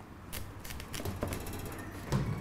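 A kitchen knife cutting through raw pumpkin with the skin left on, the blade making a series of light knocks and clicks on the cutting board.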